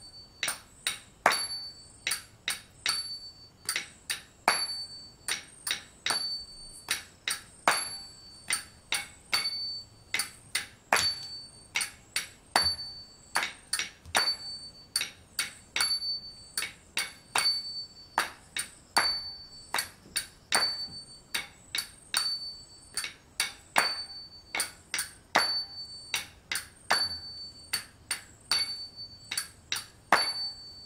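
Small Indian hand cymbals (talam) struck in a steady rhythm for a dancer, about two clinks a second, many of them left to ring briefly.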